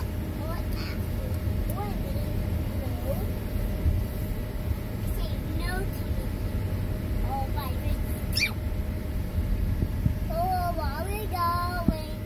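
Steady road and engine rumble inside a moving car's cabin, with a child's voice heard faintly in snatches and more clearly, in a sing-song way, near the end.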